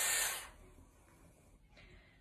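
Dyson Airwrap hair styler blowing air through its large barrel attachment on the cold air setting, a steady hiss that is switched off about half a second in, leaving faint room tone.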